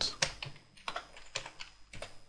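Typing on a computer keyboard: a quick, irregular run of separate, fairly faint key clicks.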